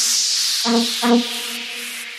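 Electronic dance music from a DJ mix at a breakdown: a white-noise sweep falls and fades while two short synth chord stabs sound, with the kick drum and bass dropped out.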